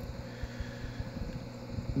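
Low, steady rumbling background noise with a faint hum, and no distinct events.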